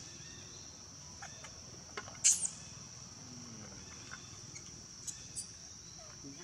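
Steady high-pitched drone of insects, with a short, sharp, very high call about two seconds in as the loudest sound, and a couple of fainter brief calls near the end.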